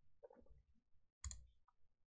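Near silence, broken once about a second and a quarter in by a single short, faint click from a computer mouse button as letters are placed on a digital Go board.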